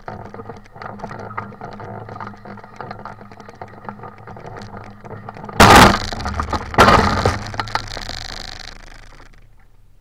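Crackling, rattling handling noise from a hang glider's frame and sail as it is walked over rough ground, picked up by a camera mounted on the glider. Halfway through come two loud rushing bursts about a second apart as the glider is tipped nose-up, and the sound then fades out.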